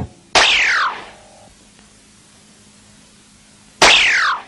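Cartoon sound effect: a sharp swoop that falls steeply in pitch over about half a second, heard about a third of a second in and again near the end, with a low lull between.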